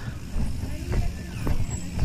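Bicycle moving along a rough concrete road: low rumble of wind and road noise, with a few separate sharp clicks or knocks, about a second in, halfway through and at the end.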